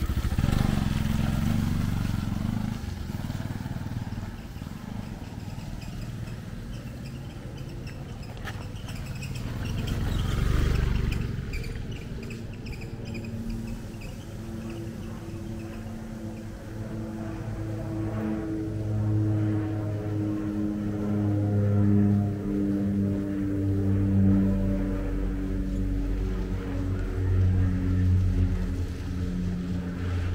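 A motorcycle running close by at the start, then fading. Later a steady engine hum builds and gets louder toward the end.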